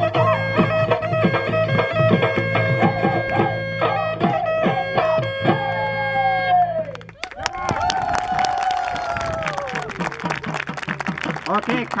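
Assamese Bihu folk music with drumbeats, a steady drone and singing, which cuts off abruptly about seven seconds in; after that come voices and scattered drum hits.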